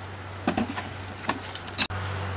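A few faint knocks of a brick being handled on the top of a wooden beehive, over a steady low hum, with a brief dropout near the end.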